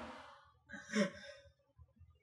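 The tail of a person's loud laugh fading out, then a short breathy sigh-like laugh about a second in.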